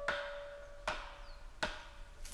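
Three sharp chops of a blade into bamboo, a little under a second apart, each with a short ring, over a fading piano note.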